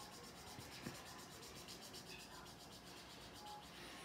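Felt-tip marker scribbling on paper: faint, quick back-and-forth colouring strokes, about eight a second, that stop a little past halfway, with one light tap about a second in.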